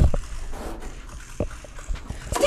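A few soft low thumps: the loudest comes right at the start, fainter ones follow about a second and a half in and near the end, over quiet room tone.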